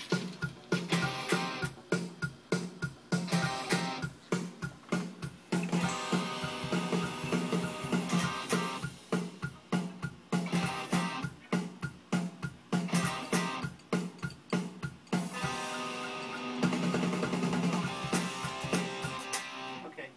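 Pop-punk band music with electric guitar, bass guitar and a drum kit keeping a steady, driving beat, heard in a small studio room through its monitor speakers.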